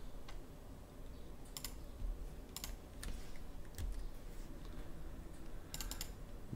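Scattered clicks of a computer keyboard and mouse, about eight in all, some in quick pairs, over a faint low hum.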